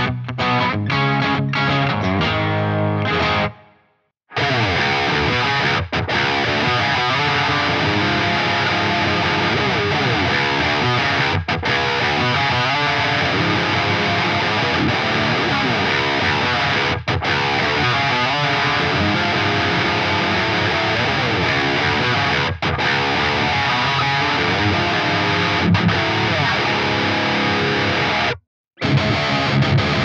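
Schecter C-1 Apocalypse electric guitar with its Schecter USA Apocalypse humbuckers, played through heavy distortion. It starts with a few separate chugged notes, stops dead about four seconds in, then goes into continuous riffing with a few short breaks. It stops briefly again near the end.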